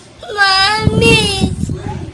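A young girl whining in one drawn-out, high-pitched, wavering cry that starts just after the beginning and trails off after about a second and a half.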